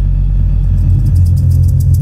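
Deep electronic bass drone from a film soundtrack played over the hall's speakers, steady and loud, with a quick, faint ticking above it.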